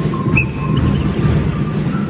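Loud Sinulog dance music, heavy and drum-driven, with a thin sustained melody line above the drumming.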